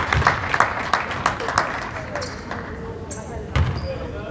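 Scattered hand claps in a gymnasium after a made free throw, with voices in the background; a single thump about three and a half seconds in.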